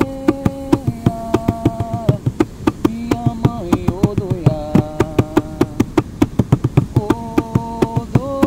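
Atabaque hand drum played in a fast, steady rhythm of quick strokes. Over it a voice holds long wordless notes of the melody of an Umbanda ponto, stepping to a new pitch about once a second.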